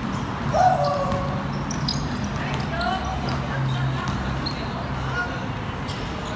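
A basketball bouncing on a hard court floor, with several sharp knocks, the clearest about two seconds in. Players shout and call out, the loudest call about half a second in.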